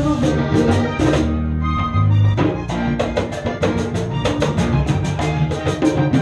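Live band playing rock-tinged vallenato with drums and guitar. The drums stop for about a second, a second and a half in, over held notes, then the beat comes back.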